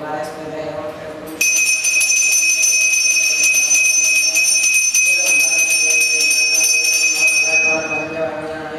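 Puja hand bell (ghanta) rung rapidly and continuously, a bright, high ringing that starts suddenly about a second and a half in and stops just before the end, louder than the chanting around it.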